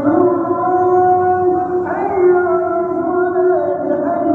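A man's solo unaccompanied voice chanting an Islamic devotional piece into a handheld microphone. He holds long, ornamented notes and rises in pitch about two seconds in.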